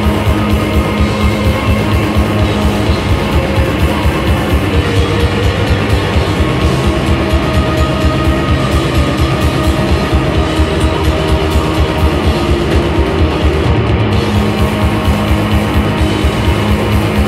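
A rock band playing live and loud: electric guitar, bass and drum kit in a dense, unbroken wall of sound over a steady, driving drum rhythm.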